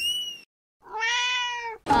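A short rising squeak, then after a brief gap a single meow-like call lasting about a second.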